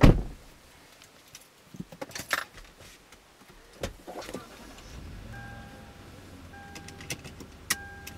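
A car door shuts with a loud thud, followed by scattered clicks and key rattles as the driver settles in. About five seconds in, the engine starts and runs with a low hum, and a dashboard warning chime sounds in short repeated spells.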